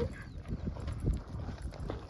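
Footsteps on a loose gravel trail: irregular faint crunches and scuffs.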